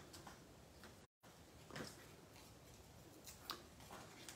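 Near silence, with a few faint ticks and rustles from hands handling a small paper tag and its foam adhesive dimensionals.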